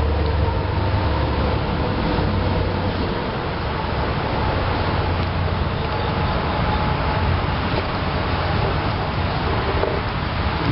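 Steady low background rumble with a hiss over it and a faint hum, with no distinct events.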